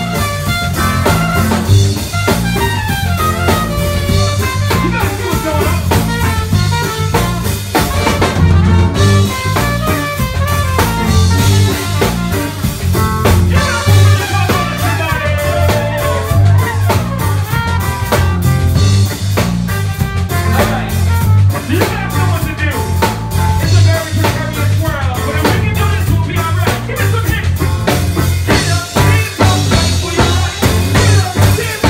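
A live band playing a song with a steady beat: drum kit, bass, electric guitar and trumpet.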